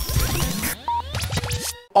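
Radio station ident jingle: electronic music with sweeping pitch glides. Partway through it changes to a run of short, sharp scratch-like strokes and brief beeps, then fades out near the end.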